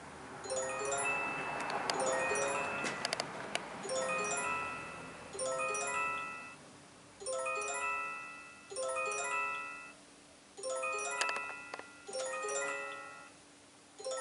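A short bell-like chime melody of quick stepped notes, repeating about every second and a half to two seconds, each time starting suddenly and fading. A few sharp clinks come in around three seconds in and again about eleven seconds in.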